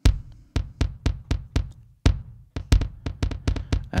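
A single drum-machine kick drum played through a tape-style multi-tap delay: two kicks, the second a little past halfway, each followed by a run of echoes that fade away.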